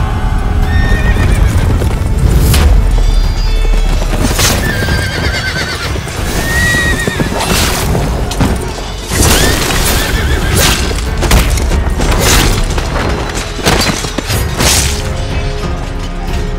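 Dramatic film score over a mounted battle: horses neighing and hooves clopping, with a run of sharp hits and clashes of fighting, thickest in the second half.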